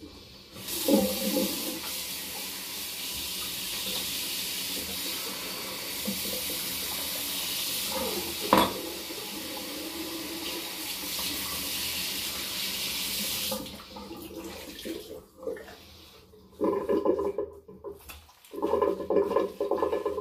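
Bathroom sink tap running steadily for about twelve seconds while the face is rinsed after a shave, with one sharp knock midway. The tap then shuts off, followed by a few short bursts of splashing near the end.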